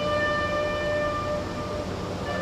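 A bugle call at a military ceremony: one long held note, clear and steady, that breaks off shortly before the end.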